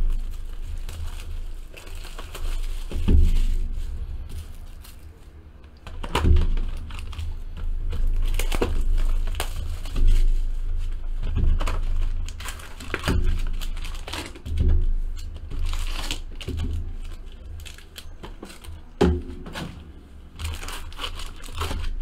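Plastic shrink-wrap being torn off and crumpled from a trading-card box, then the cardboard box flaps opened and foil card packs pulled out and handled, with irregular crinkling and occasional knocks.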